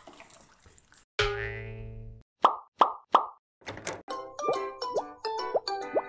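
Intro jingle: a ringing chord about a second in, then three short cartoon pops, then a playful tune of plucked notes with short rising slides.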